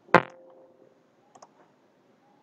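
A loud sharp click with a short ringing tone trailing off, then two quick faint clicks about one and a half seconds in, as of a computer mouse.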